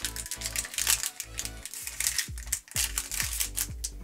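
Background music with a steady bass-heavy beat, over rapid crisp clicks and crinkles from Pokémon cards and a foil booster-pack wrapper being handled.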